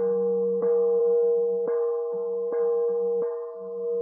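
Slow, calm instrumental music: a steady held tone with a plucked note sounding about once a second over it.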